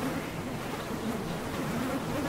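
A swarm of mosquitoes and other biting insects buzzing around a reindeer: a steady drone of many overlapping, wavering wing tones.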